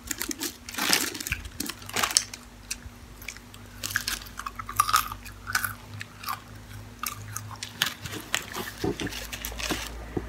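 Close-up eating sounds of french fries being bitten and chewed: irregular crunchy clicks and wet mouth sounds, loudest about a second and two seconds in.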